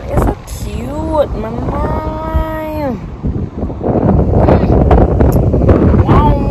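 A woman's voice sings a short note that swoops up and then holds steady for about a second. In the last two seconds, wind buffets the microphone loudly.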